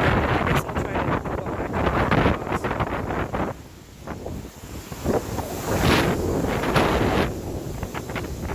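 Strong wind buffeting a phone microphone outdoors in gusts, with a brief lull about halfway through before it picks up again.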